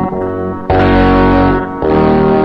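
Instrumental music: sustained, effects-laden distorted electric guitar chords over a low bass. A louder new chord comes in under a second in.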